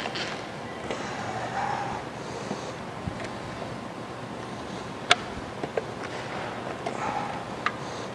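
Handling noise from a plastic car fuel filler door being worked loose from its hinge, with a few light clicks and one sharp click about five seconds in, over a steady background hiss.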